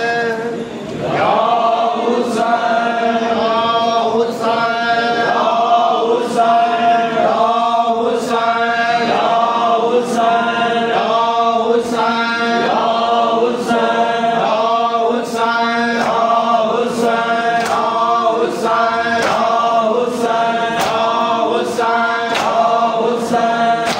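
A group of men chanting a Shia noha (mourning lament) together in a repeating phrase, with chest-beating (matam) slaps keeping time about every two seconds.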